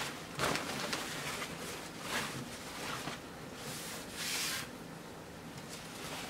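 Fabric rustling as hands smooth and spread it flat on a table, in a few brief swishes, the longest about four seconds in.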